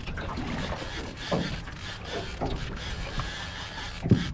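Steady low rumble of wind and water noise aboard a small open boat, with a few brief faint vocal sounds.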